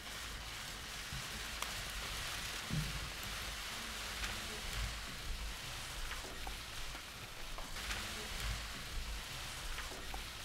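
Many press cameras' shutters firing together in a dense, continuous patter of rapid clicks, with a few louder single clicks standing out.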